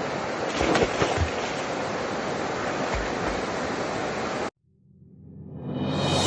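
Steady rushing outdoor noise with a few soft low thumps, cut off abruptly after about four and a half seconds; music then fades in and grows loud by the end.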